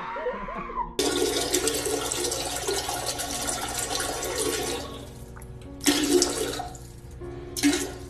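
Boston terrier urinating into a toilet bowl while standing on the seat: a steady splashing of liquid into water for about four seconds, then two brief louder noises near the end.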